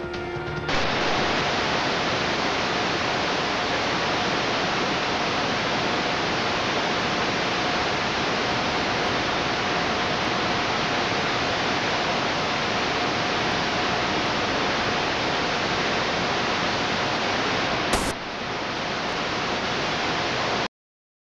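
Loud, steady static hiss of a video signal gone to snow, with a faint steady whine running through it. The last second of a broadcast's music ends just before the hiss starts, and a click about 18 seconds in leaves the hiss slightly quieter.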